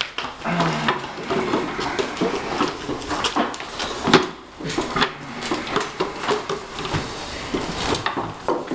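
Knocks, scrapes and shuffling of people sitting down at folding wooden tray tables and metal folding chairs on a tile floor, with bags set down and furniture bumped many times.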